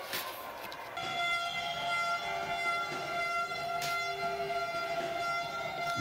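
Horns blowing several steady notes at once, held for several seconds from about a second in, with a couple of sharp knocks.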